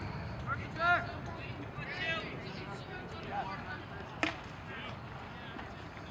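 Short voices calling out across the ball field, and one sharp pop about four seconds in.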